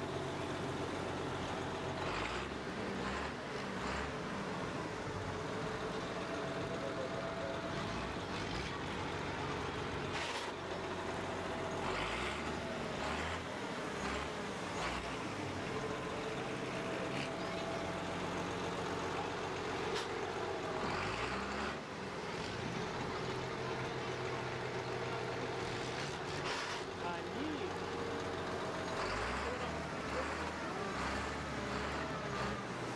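Longtail boat engine running steadily under way, its pitch gliding briefly a little past the middle.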